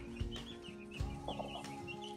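A brood of Cornish cross chicks peeping: many short, high peeps overlapping.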